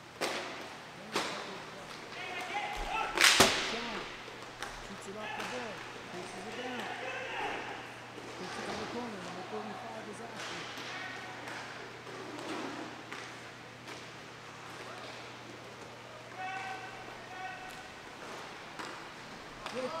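Sharp cracks of hockey sticks and the puck against the boards during a roller hockey game, three loud ones in the first few seconds, the loudest about three seconds in. Indistinct shouts of players and a steady hum run underneath.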